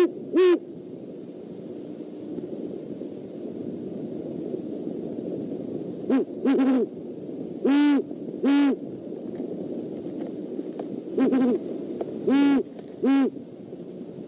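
Great horned owl hooting: one hoot just after the start, then after a pause of about five seconds two series of deep, evenly spaced hoots in the second half.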